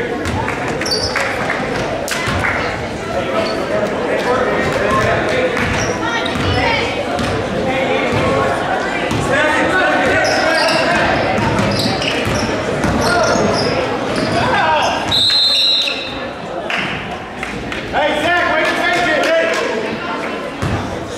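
Basketball dribbling and shoes on a hardwood gym floor, with spectators' voices echoing through the gymnasium. A short, high referee's whistle sounds about three-quarters of the way through.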